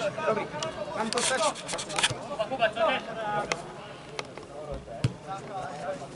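Football players calling out across the pitch, with several sharp thuds of the ball being kicked, about two, three and a half and five seconds in.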